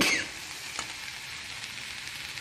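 Sliced onions and green chillies sizzling in oil in a frying pan. A short scrape of the spatula with a brief falling squeal comes right at the start, then a steady sizzle with a few faint ticks.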